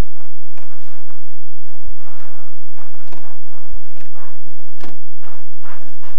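Irregular footsteps crunching in snow and small handling knocks, with two dull thumps about two and three and a half seconds in, as the driver's door of a 1991 Chevrolet Blazer is opened.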